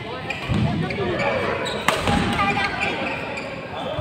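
Badminton doubles rally: a racket strikes the shuttlecock with one sharp crack just before two seconds in, amid thudding footfalls of players on the court. Voices echo in the hall throughout.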